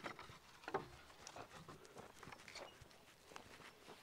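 Near silence: a faint outdoor background with a few soft, scattered taps.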